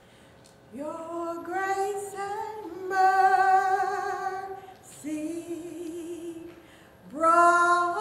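Women singing a praise song without accompaniment, in slow phrases of long held notes. The singing begins under a second in, pauses briefly twice, and a new, louder phrase starts near the end.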